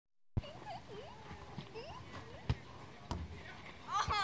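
Children's voices calling out over a gaga ball game, with three sharp knocks of the ball being swatted and hitting the wooden walls of the pit; the loudest comes about two and a half seconds in.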